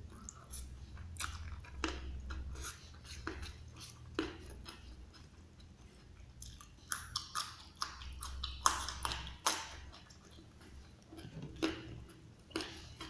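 A person chewing a mouthful of raw leunca (black nightshade) berries and rice: wet chewing with irregular sharp crunches as the berries are bitten, the loudest cluster about nine seconds in.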